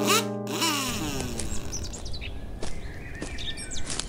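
A guitar chord from the intro music rings out in the first second, its pitch sliding down as it fades. It gives way to outdoor ambience: a low steady rumble with short, high bird chirps from about two seconds in.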